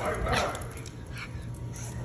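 A dog barking in rough play with another dog, with a short loud bark about a third of a second in, then quieter.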